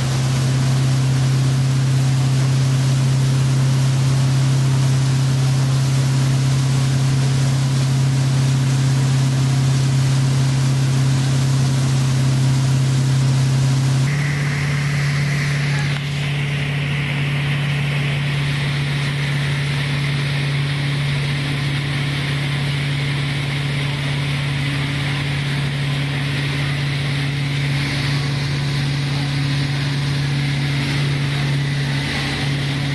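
Malibu ski boat's inboard engine running steadily under way, with the rush of wake and spray. About halfway through the drone rises a little in pitch, and shortly after the water hiss drops away, leaving mostly the engine hum.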